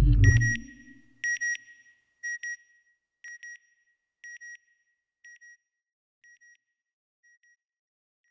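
Logo sting sound effect: a deep whoosh with a low boom, then a high electronic double beep that repeats about once a second, growing fainter with each repeat like a fading echo.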